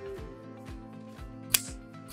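Plastic caster cover snapping into place on a wagon's front caster pod: one sharp click about one and a half seconds in, over background music.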